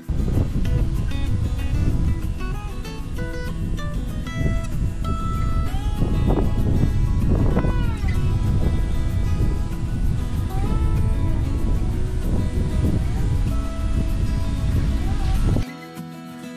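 Background guitar music over loud, gusty wind buffeting the microphone. The wind noise cuts off suddenly near the end.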